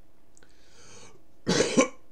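A man draws a breath, then coughs, a loud double cough about a second and a half in.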